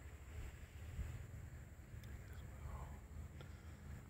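Faint outdoor background with a low, uneven rumble of wind on the microphone.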